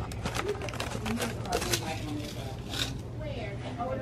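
Paper seed packets rustling and flicking as they are pulled from a store rack and thumbed through by hand, a run of short crisp sounds. Faint voices and a steady low hum sit underneath.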